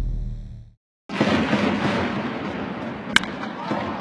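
A logo sting fades out in the first second. After a brief silence comes baseball stadium crowd noise, and a single sharp crack of a bat hitting the ball about three seconds in.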